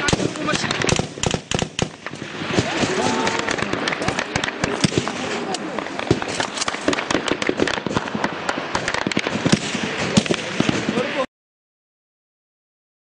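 Dense gunfire, many sharp shots cracking in quick, irregular succession, with voices mixed in. The sound cuts off abruptly near the end.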